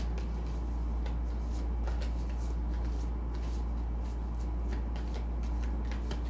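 A deck of oracle cards shuffled by hand: an irregular run of quick card slaps and rustles, over a steady low hum.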